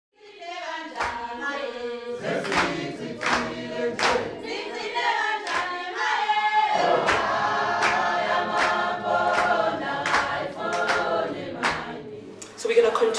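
A choir singing in harmony, fading in at the start, with steady hand claps a little more than once a second.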